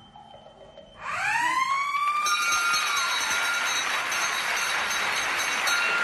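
A game-show siren winds up about a second in, rising in pitch and levelling off, marking the end of the contestants' answer time. It then fades into a steady noisy wash that lasts to the end.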